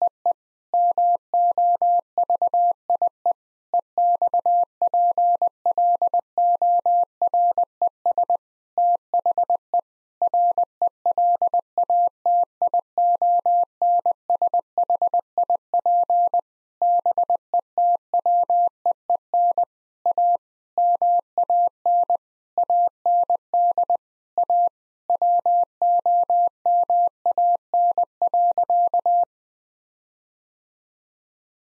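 Morse code sent at 20 words per minute as a steady mid-pitched tone, keyed in short and long beeps with brief gaps between letters and words. It spells out the sentence "The movie explores the relationship between a man and a woman."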